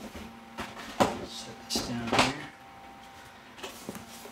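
Cardboard boxes being handled: the outer shipping carton is slid off and set aside and the laptop box is gripped, giving four short knocks with scraping and rustling of cardboard in the first two and a half seconds, then quieter handling.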